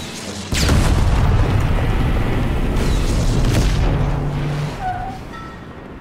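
A loud boom about half a second in, with a dense rumble that carries on for about four seconds before dying down, over music from a cartoon soundtrack.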